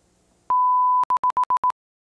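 An electronic beep tone: one steady, single-pitched tone of about half a second starting about half a second in, then five short beeps of the same pitch in quick succession, cutting off abruptly.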